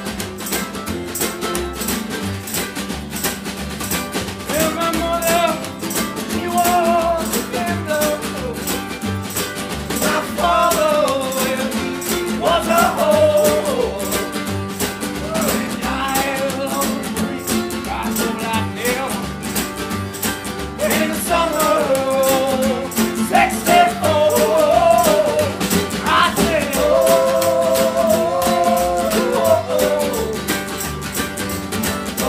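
Live acoustic string band playing a song: steady strummed acoustic strings, with a man's voice singing the melody from about four seconds in.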